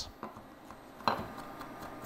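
A chef's knife tapping on a wooden cutting board while mincing: a few faint taps, the clearest about a second in.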